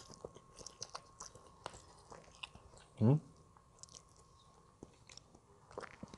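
Close-up mouth sounds of a man chewing fried noodles (mie goreng) and yellow rice eaten by hand: small wet clicks and smacks throughout. About halfway through comes a short, falling hum of the voice.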